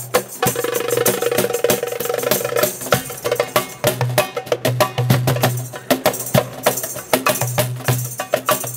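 Darbuka and cajón played together in a fast, busy rhythm of deep low strokes and sharp slaps. About half a second in, a rapid roll runs for roughly two seconds before the strokes carry on.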